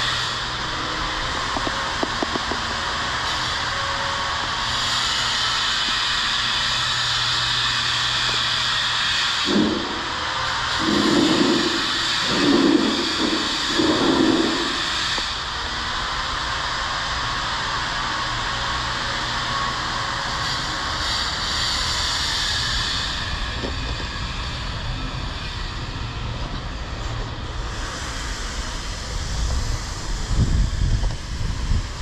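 Steady hissing background noise with a low hum. A few louder, irregular sounds come about ten to fifteen seconds in.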